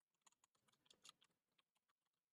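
Faint computer keyboard typing, a quick irregular run of keystrokes.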